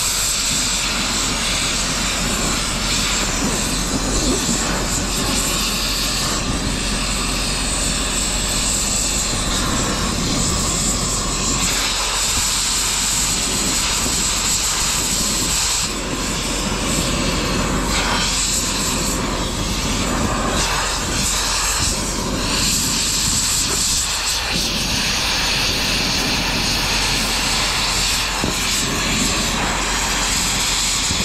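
Oxy-fuel cutting torch running steadily, a continuous hissing roar as it cuts scrap metal, with a brief dip about halfway through.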